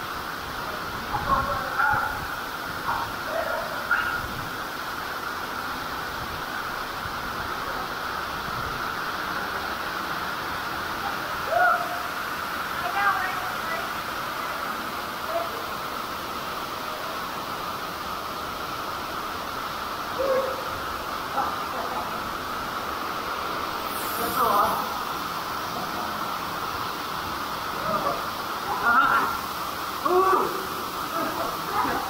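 Steady rush of a small waterfall pouring into a rock-walled pool, with brief calls and voices from people in the water now and then.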